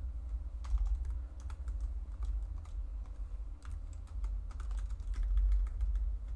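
Typing on a computer keyboard: irregular keystroke clicks at an uneven pace, over a steady low hum.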